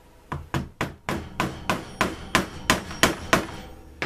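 Mallet striking a pronged leather stitching punch, driving it through the leather into a plastic cutting board: a quick run of about fifteen sharp strikes, several a second, stopping about three and a half seconds in.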